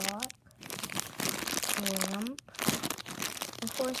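Plastic toy wrapping crinkling steadily in the hands as small wooden dollhouse pieces are unwrapped, a dense run of fine crackles.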